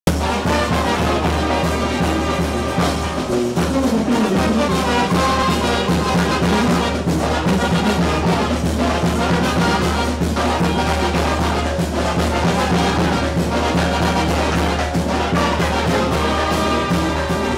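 Live street band of clarinets, brass and drum playing lively dance music without a break, with a steady deep bass line under the melody.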